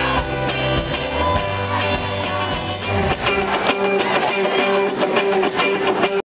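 A live rock band playing, heard from the audience: electric guitars, bass guitar and drums. The low bass drops out about three seconds in, leaving guitars and a held note ringing over the drums.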